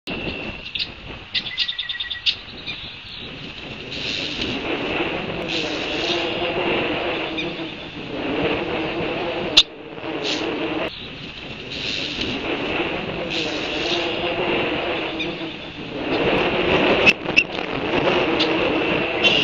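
Bird chirps, with a rapid run of them about a second in, over the sound of cars passing on a road that swells and fades several times.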